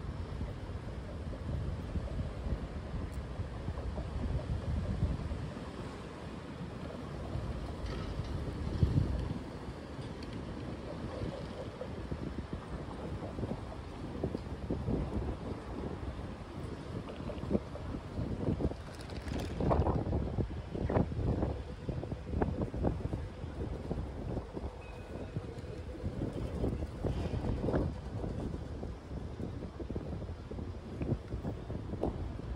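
City street ambience picked up by a phone microphone while walking: a steady low rumble of traffic, with wind buffeting the microphone. A few sharper knocks and clatters stand out about two-thirds of the way through.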